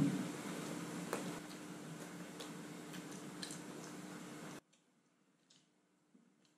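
Quiet chewing of a mouthful of burger with the mouth closed: a few faint, scattered wet mouth clicks over a low steady room hum, the sound cutting out to silence near the end.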